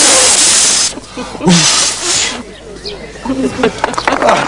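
A person blowing out the candles on a birthday cake: two long, hard puffs of breath, the first about a second long and the loudest, the second starting about a second and a half in.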